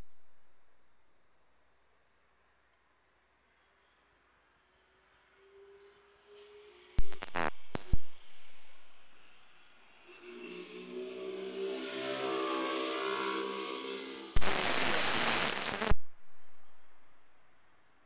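Air traffic control radio receiver between transmissions. Two sharp push-to-talk clicks come about seven and eight seconds in. A humming tone with overtones follows for about four seconds, from a carrier with no readable voice, then a burst of static that cuts off suddenly after about a second and a half.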